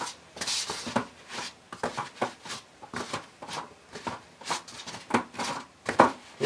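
Hands pressing and rubbing a heated sheet of thick foam down over a clear plastic dome: irregular soft rubbing and scuffing strokes with light knocks, as the foam is formed into a compound curve.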